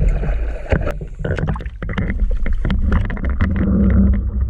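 Choppy seawater sloshing and splashing against a boat's hull as a diver comes up at its side, with a low rumble and many irregular clicks and knocks.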